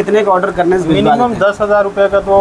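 A man talking: ongoing speech with no other distinct sound.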